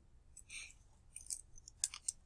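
A few faint, short clicks, the sharpest near the end, after a brief soft noise about half a second in.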